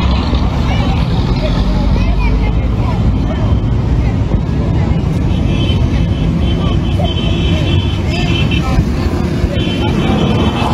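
Steady low rumble of outdoor street noise, with passing road traffic and scattered voices of people talking in the background.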